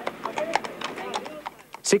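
Hooves of a harness horse pulling a sulky clip-clopping on a paved road, a quick run of hoofbeats.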